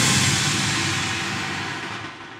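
Closing music fading out: a held low chord and a hissy, shimmering wash dying away steadily.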